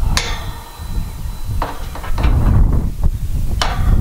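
Automatic farm gate's lock clunking as it engages on the closed gate: three sharp knocks about a second and a half to two seconds apart, the first with a brief metallic ring. Wind rumbles on the microphone through the second half.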